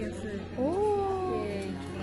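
A woman's drawn-out "ooh" of surprise: one long vocal glide that rises briefly, then slowly falls in pitch.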